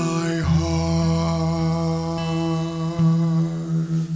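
A man singing one long held note on the last word of a hymn verse, 'heart', over a sustained acoustic guitar chord. It fades away near the end.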